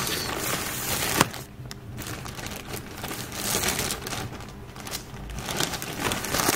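Thin plastic pouch crinkling as it is handled, with one sharp click about a second in.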